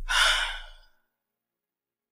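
A woman's heavy sigh in distress: one loud, breathy exhale lasting under a second at the very start.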